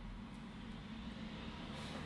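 Low background rumble, slowly growing louder, with a brief faint hiss near the end.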